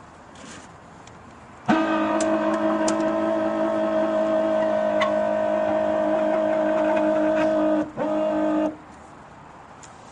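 A loud steady tone of several pitches sounding together, starting suddenly and holding for about six seconds, then breaking off briefly and sounding once more for under a second.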